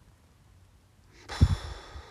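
A person's loud, breathy sigh that starts a little over a second in and trails off.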